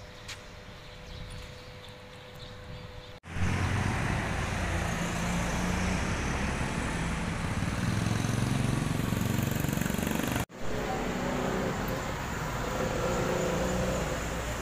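Street traffic: motorbike and car engines running and passing. The traffic is faint for the first three seconds, then loud, and the sound breaks off abruptly twice, about three and about ten seconds in.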